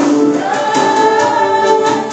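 A church worship band playing: several voices, women and a man, singing a worship song together over drums and keyboard, with a couple of drum or cymbal hits.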